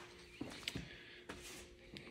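Quiet room tone with a faint steady hum and a few soft clicks.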